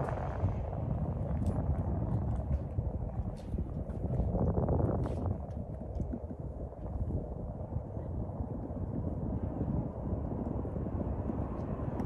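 Low, uneven outdoor rumble that swells and eases over several seconds, with a few faint ticks.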